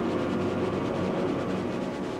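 Propeller aircraft engines droning steadily in flight.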